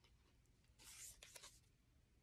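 Faint brief rustle of tarot cards being handled, a card slid against the others as it is added to the hand, about a second in; otherwise near silence.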